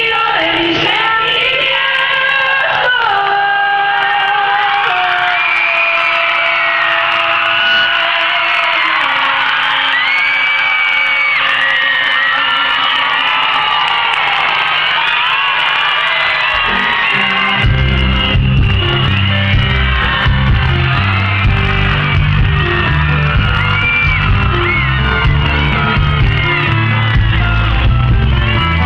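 Live pop-rock band with a crowd cheering and whooping: held chords stepping downward over the audience's shouts, then about two-thirds in the band kicks into a steady beat with heavy bass and drums.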